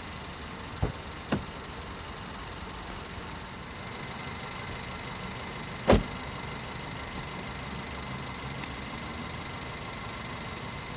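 A waiting taxi's engine idling with a steady low hum; two light clicks about a second in, then a car door shuts with a single loud thud about six seconds in.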